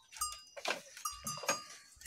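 Goats in a pen, with a few brief, faint calls spread across the moment.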